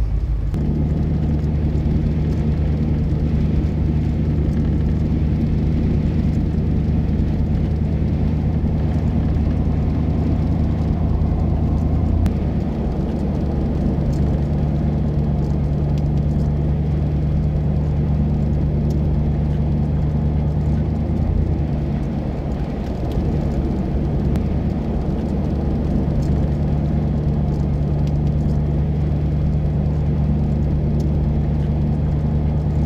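A car's engine and road noise heard from inside the cabin while driving on a snow-covered road: a steady low drone whose note drops briefly about twelve seconds in and again a little past twenty seconds.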